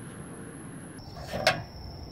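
A handheld flashlight clicked off once, a single sharp click about one and a half seconds in, over a steady thin high-pitched tone.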